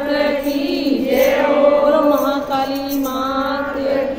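A group of women singing a devotional bhajan together in unison, with long held lines. Small hand cymbals (manjira) tied on a string are struck and hands clap to keep the beat.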